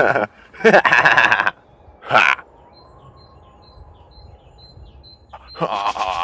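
A person's voice making wavering, wobbly-pitched non-word vocal sounds, twice in the first half and again near the end. In the quieter stretch between come faint high bird chirps in a quick series, about three a second.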